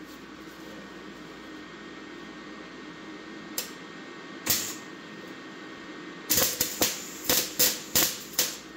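A 110-volt MIG welder's arc crackling and sputtering in several short bursts from about six seconds in, tacking a coated steel landing-gear part. Before the arc strikes there is only a steady low hum and a couple of faint clicks.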